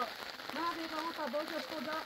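A woman's voice talking, over a steady light hiss that sounds like rain falling on the ground.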